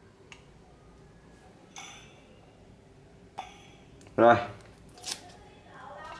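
Light handling noise from dial thermometers and their paper price tags: a few faint clicks and paper rustles, with a short spoken syllable about four seconds in.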